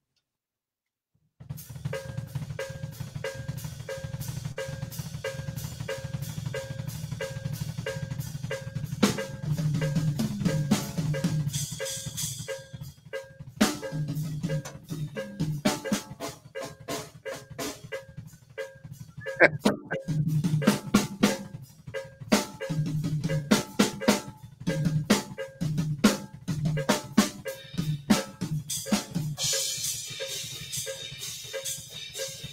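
Drum kit groove played largely with the feet: a steady foot-pedal cowbell pulse over bass drum strokes, starting after about a second and a half of silence. From about nine seconds in, snare and tom strokes from one hand join in, with cymbal splashes here and there.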